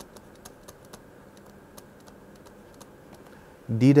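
Light, irregular clicks and taps of a stylus on a pen tablet while handwriting, over a faint steady hiss; a man's voice starts just before the end.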